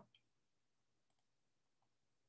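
Near silence, with a few barely audible faint clicks.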